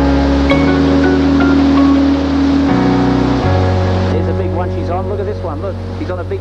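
Background music: low held bass notes that change a few times, under short plucked notes. About two-thirds of the way in, a voice comes in over the music.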